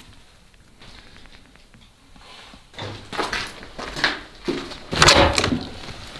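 Quiet room tone, then a run of knocks and scrapes as an old door in a derelict building is pushed open, the loudest about five seconds in.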